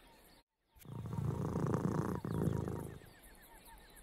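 A big cat's low, rapidly pulsing growl, about two seconds long, used as a sound effect. Faint high chirps repeat in the background.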